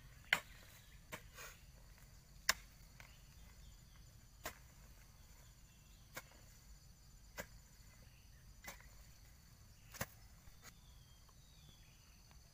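Hand hoe chopping and scraping into loose soil: about nine short, sharp strikes, spaced irregularly a second or two apart, as the earth is hoed up into a planting ridge. Insects chirr steadily and faintly behind.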